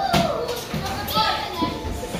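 Children's voices and play noise in an indoor play room, with a pop song playing over them.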